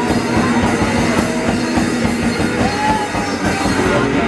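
A d-beat punk hardcore band playing live and loud: fast drumming under distorted electric guitar and bass, with a short bent note about three seconds in.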